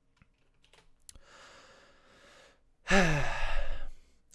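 A woman's soft in-breath, then a loud, drawn-out sigh into a close microphone, its pitch falling, starting about three seconds in. A few faint clicks come before it.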